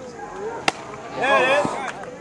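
A single sharp crack a little over half a second in, then a loud, high-pitched shout from a person, lasting about half a second.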